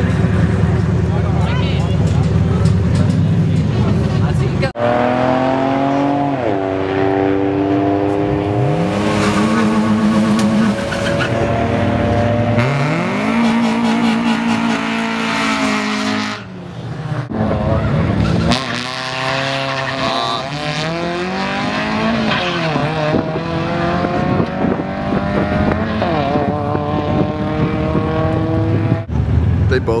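Drag-racing car engines: a low steady idle rumble, then several hard accelerations with the engine note climbing and dropping back at each gear shift. The sound breaks off abruptly between runs.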